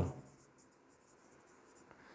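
Faint scratching of a marker pen writing on a whiteboard, after the tail end of a man's spoken word at the very start.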